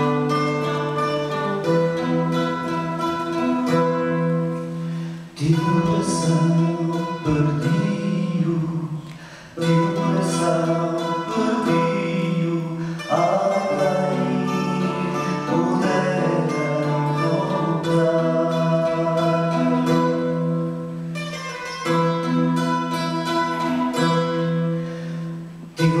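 A student tuna ensemble performing a fado-style song: guitars and mandolins plucked and strummed together under held sung notes from male voices. The music dips briefly a few times, about five and nine seconds in and just before the end.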